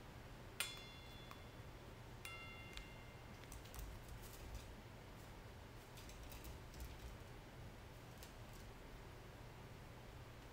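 Two ringing clinks from a small stainless steel bowl struck by a toucan's beak, the first about half a second in and the louder, the second about two seconds in, each ringing for a moment. Faint scattered clicks follow.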